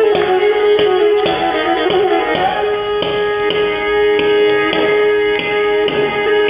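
Pontic lyra (kemenche) bowed in a lively tune over a steady sustained drone note, with short percussive taps about twice a second keeping the beat.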